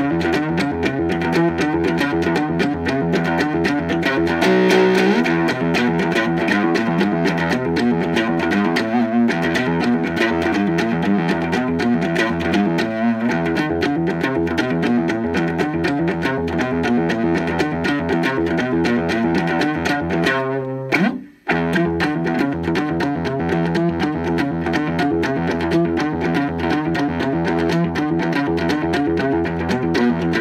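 Amplified cigar box guitar improvising a rhythmic groove on one string, mixing in stops and starts. The playing runs on steadily and breaks off for a moment about two-thirds of the way through before picking up again.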